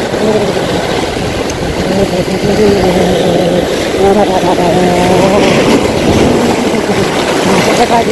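Waves breaking and washing over breakwater rocks: a loud, steady rush of surf, with a faint wavering pitched hum underneath.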